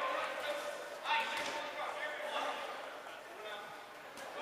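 Players' voices calling out, echoing around a large gymnasium, with a dodgeball thudding once on the hardwood floor about a second in.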